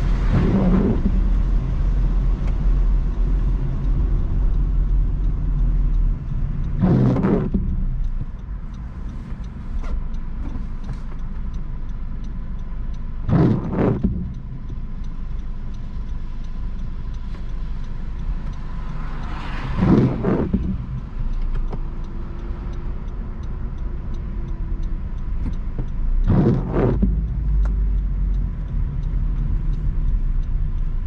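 Car driving on wet roads in the rain, heard from inside the cabin: a steady low road and engine rumble that eases as the car slows and stops in traffic about eight seconds in, then builds again near the end as it pulls away. Intermittent windshield wipers sweep five times, about every six and a half seconds.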